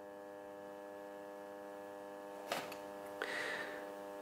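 EMCO V13 metal lathe running with a steady electric hum of many even tones. A single click comes about two and a half seconds in, and a short rasp follows a little before the end.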